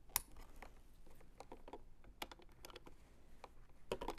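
Quiet handling noise with a few sharp small clicks as a cable plug is fitted into the port of a small proximity-sensor unit and the cable is handled.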